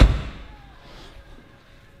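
The door of a 1986 BMW 635CSi coupe being shut: one solid thud that fades within about half a second.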